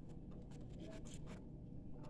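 A fork faintly scraping and clicking against a plate as food is gathered onto it, a quick run of small scratches through the middle.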